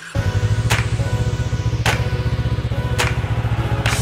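Intro music with a steady, fast low pulsing and a sharp swish-like hit about once a second.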